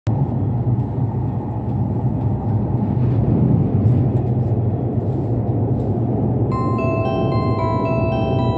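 Steady low running rumble inside the cabin of a limited express train. About six and a half seconds in, an on-board chime melody of bell-like notes begins: the signal that a passenger announcement is about to start.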